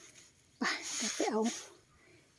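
A woman's voice speaking a few short words in Thai, with a breathy hiss, between pauses.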